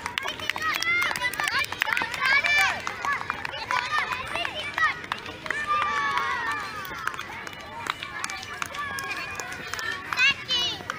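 Children's high-pitched voices calling out and chattering, several overlapping at once, with no clear words.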